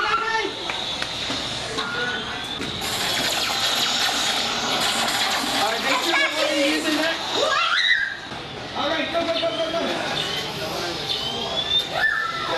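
Electronic game sound effects from a Playmation Avengers repulsor gauntlet and game station: short rising zaps and a noisy blast, with a larger swooping zap about halfway through, mixed with voices.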